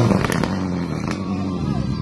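Rally car engine drawing away down a dirt road just after passing at speed: the level drops as it goes by, then a steady engine drone follows it into the distance, with a couple of sharp cracks about a third of a second and a second in.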